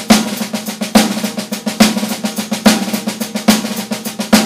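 Drum kit played with sticks: a drag paradiddle in 6/8 on the snare drum, dense strokes and grace notes with a strong accent, together with a bass drum hit, a little more often than once a second.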